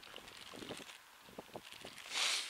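Faint crinkling of a plastic snack packet of peanuts being handled, a few soft crackles scattered through the quiet.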